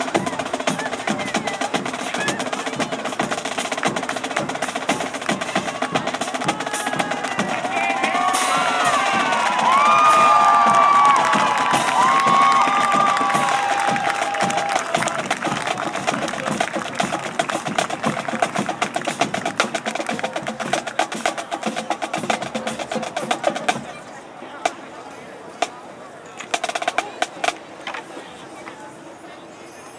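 High school marching band drumline playing a fast, steady percussion cadence of snare and drums. Voices call out over it in the middle. The drumming stops about 24 s in, leaving a few scattered clicks.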